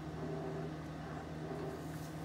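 A steady low hum over faint even background noise, with no distinct events.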